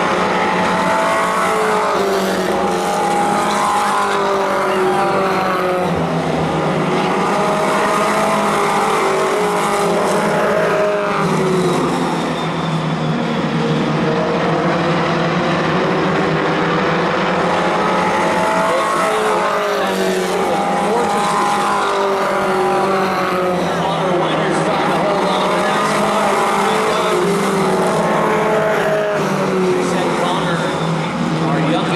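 Several four-cylinder pro-stock race car engines running around the oval, their pitch rising and falling over and over as the cars pass and go through the turns.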